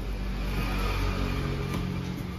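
A motor vehicle engine running, its pitch rising a little over the couple of seconds.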